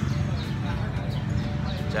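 A small motorcycle engine running steadily, a constant low rumble with a regular knocking beat.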